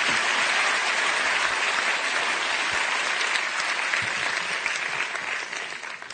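Audience applauding, steady throughout and dying away near the end.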